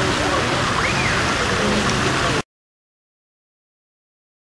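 Steady rush of running water with faint voices in the background, stopping suddenly about two and a half seconds in.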